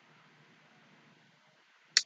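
Near silence with faint room hiss, then one sharp click just before the end.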